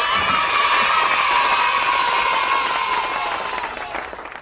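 A crowd of children cheering together, starting suddenly and tapering off near the end.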